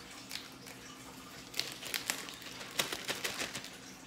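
Thin clear plastic bag crinkling as it is handled, a scatter of light crackles starting about a second and a half in.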